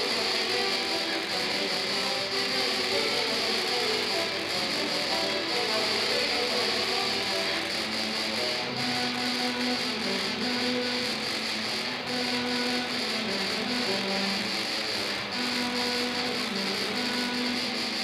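Tuba-euphonium quartet playing a metal-style piece, dense sustained brass notes throughout. A lower line of held notes that step in pitch joins about eight seconds in.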